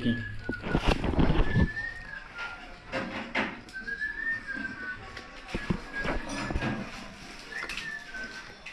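Someone whistling a tune: a thin, high line of short held notes that slide slightly between pitches, with scattered knocks and handling noises.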